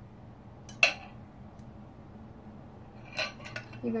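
Metal fork clinking against a glass mixing bowl while egg batter is poured out: one sharp clink about a second in, then a short run of lighter clinks near the end.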